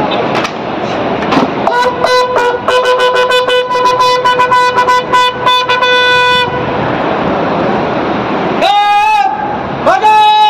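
Bugle sounding a salute call as a police guard of honour presents arms: a long held note from about two seconds in until past six seconds, then a higher note starting near the end, over a murmuring crowd.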